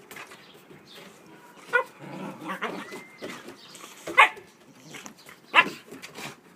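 Young Siberian huskies play-fighting, one giving three short, sharp barks: one about two seconds in, one around four seconds and one near the end, with quieter scuffling and vocal noise between.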